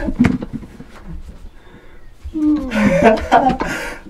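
Men laughing and exclaiming in excitement: a short burst at the start, a quieter pause, then more laughter and voices from a little after two seconds in.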